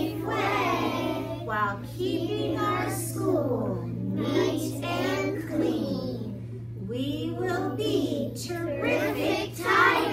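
A class of young children singing together in unison, their voices rising and falling through held notes, with a steady low hum underneath.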